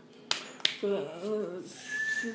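Two sharp clicks about a third of a second apart, then a short stretch of a person's voice.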